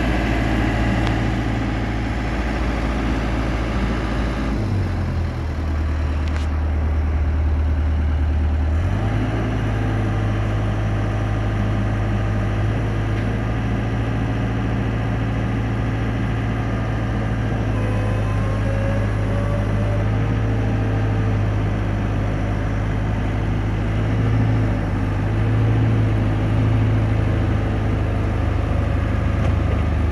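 Engine of a JLG 600A articulating boom lift running steadily as the machine is driven around. The engine note shifts about five seconds in and settles back about four seconds later.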